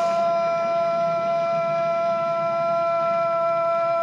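One long held musical note from a television soundtrack, steady in pitch with clear overtones; it slides up into place at the start and falls away just after the end.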